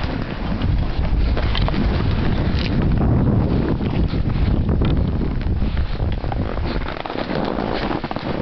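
Wind rushing over the microphone of a camera carried by a skier moving fast through the trees. Under it, skis scrape and chatter on the snow in short, irregular bursts.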